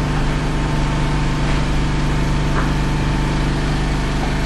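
Generator engine running steadily, a constant low hum.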